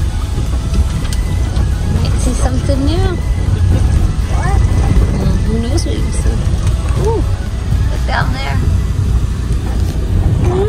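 Steady low rumble of a bus driving along a road, heard from inside the cabin, with indistinct voices over it now and then.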